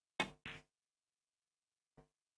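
Two sharp clicks of snooker balls about a quarter of a second apart, the first louder: the cue tip striking the cue ball, then the cue ball hitting a red.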